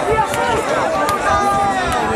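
Many overlapping voices shouting and calling out on a football pitch during play, with a few short sharp clicks among them.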